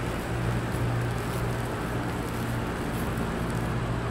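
Steady low mechanical hum of a parking garage's ambience, with an even noisy rush over it and no distinct events.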